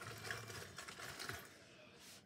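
Faint handling noise: small plastic and silicone hand-sanitizer holders clicking and rustling lightly as they are picked through, with a brief low hum of a voice near the start.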